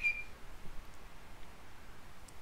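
Quiet room tone, with one short high-pitched squeak lasting about a third of a second at the very start.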